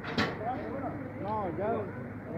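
Voices of people calling out over a steady background of street noise, with one sharp clack just after the start.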